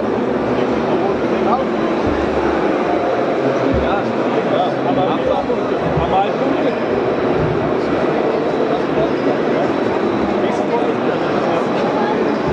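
Crowd babble: many voices talking at once in a steady, even murmur, with no single voice standing out.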